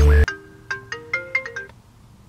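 Mobile phone ringtone: a short melody of separate stepped notes. It begins just after loud electronic music cuts off suddenly.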